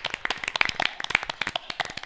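A small group of people applauding: quick, irregular hand claps that keep up without a break.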